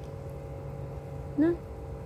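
A steady low mechanical hum, with a woman's short spoken 'No?' about one and a half seconds in.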